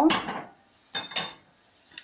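Metal wire whisk knocking against a ceramic mixing bowl: a short scrape at the start, then two sharp clinks about a second in.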